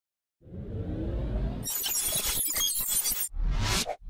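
Logo intro sound effects: a low rumble builds from about half a second in. About a second and a half in, a bright, noisy crash with scattered crackle takes over. Near the end a short rising whoosh follows.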